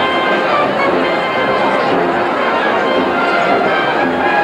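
Music with short held notes sounding over a dense, steady hubbub of many voices in a crowd.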